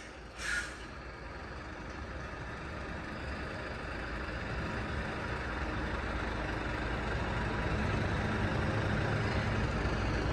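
Articulated truck with a curtainsider semi-trailer: a short hiss of air brakes about half a second in. Then the diesel engine's low running noise grows steadily louder as the truck moves closer.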